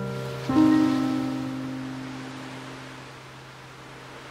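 Slow, soft background piano music: a single chord struck about half a second in and left to fade, over a faint steady hiss.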